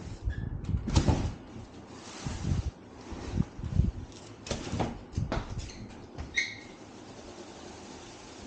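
A large cardboard shipping box being handled and lifted: scrapes, rustles and knocks of cardboard, loudest about a second in, with a few more knocks around the middle before it goes quieter near the end.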